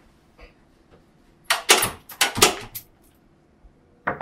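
A restroom door swinging shut and latching: a short cluster of loud clattering knocks about a second and a half in.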